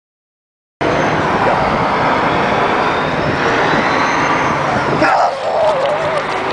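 Loud, steady rushing noise that cuts in abruptly about a second in, with a short voice-like shout about five seconds in.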